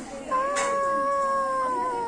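A young girl singing. After a short break she holds one long, drawn-out note that sinks slightly in pitch near the end.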